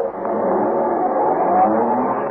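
Radio-drama sound effect of a car engine revving as the car speeds away. It swells up just after the start and holds steady, muffled by an old recording that carries only the lower pitches.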